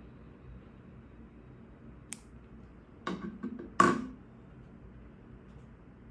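Handling noise from a hand on the devices: a sharp click about two seconds in, then about a second of knocks and rubbing, loudest near the four-second mark, over quiet room tone.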